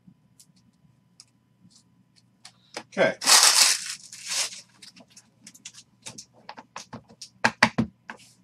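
Card packaging being torn open: one loud rip about three seconds in. It is followed by a quick run of sharp clicks and taps as cards and packs are handled on the table.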